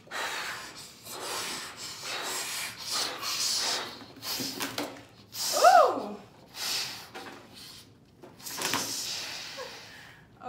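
Repeated hard puffs of breath blowing up latex balloons. A short, falling squeal a little past halfway is the loudest sound.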